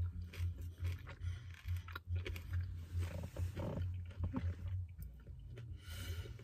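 A person chewing a mouthful of shrimp with closed lips close to the microphone: soft low thuds about twice a second with small wet clicks.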